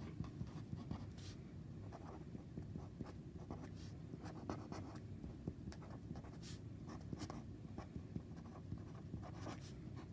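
A felt-tip pen writing on paper: faint, irregular short scratches and squeaks of the tip as letters are drawn stroke by stroke.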